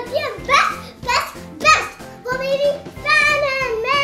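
Excited children's voices over background music: short rising shouts about twice a second, then a long held, sung-sounding note through the second half.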